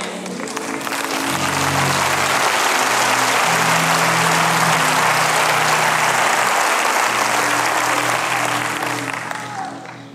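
Large auditorium audience applauding, swelling over the first couple of seconds and dying away near the end. Held low musical chords sound under the clapping.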